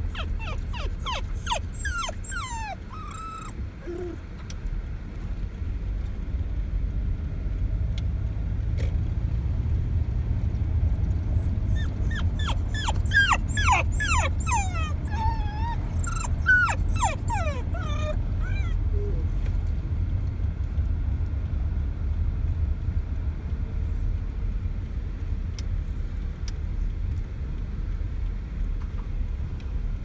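A wirehaired dachshund whining and yipping in rapid, high-pitched, falling notes, in a short bout at the start and a longer bout about twelve seconds in: the dog is excited at nearing home. Steady low car road rumble runs underneath, from inside the moving car.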